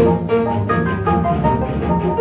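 Orchestral music from a piano concerto, on a 1937 78 rpm disc transfer with nothing heard above about 8 kHz. A sharp accented chord at the start is followed by a run of quick, short notes.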